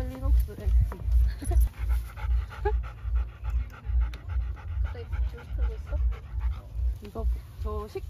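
Rottweiler panting steadily close by, about two to three breaths a second.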